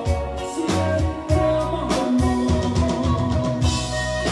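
Live band music through a PA: a drum kit keeping a steady beat under bass and sustained keyboard notes.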